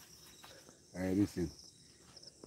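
Faint, steady high-pitched insect chorus, like crickets, running under a short, unclear spoken sound about a second in.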